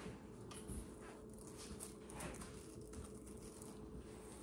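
Handheld manual can opener being worked around the rim of a can, giving a few faint, irregular clicks.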